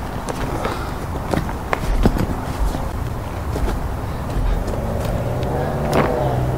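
Scattered clicks, knocks and rustling from camping gear and an extension cord being handled, with a few dull thumps, over a steady background noise.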